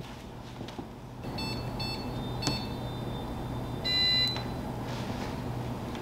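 Electronic beeps: a few short beeps in quick succession, then a longer, louder beep about four seconds in, over a low steady hum.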